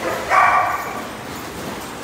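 A dog barks once, a drawn-out bark about a third of a second in that lasts around half a second, over a faint steady background.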